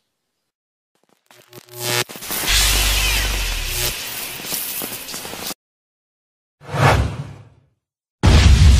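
Edited-in electric lightning sound effect: a rising swell into a loud, steady electrical crackle over a low hum, cut off abruptly after about three and a half seconds. A short whoosh follows near the end.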